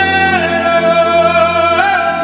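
A male llanero singer's voice holding long, drawn-out notes in a joropo song. The pitch drops about half a second in and wavers near the end, over a softer band accompaniment.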